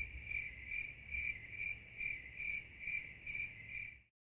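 A cricket chirping in an even rhythm, about two to three high chirps a second at one steady pitch. It stops abruptly at the end.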